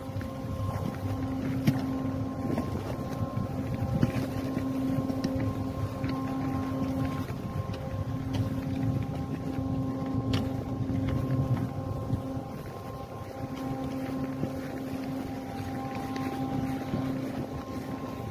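A steady machine hum with one pitch and its overtones, dropping out briefly every four to five seconds, over wind rumbling on the microphone.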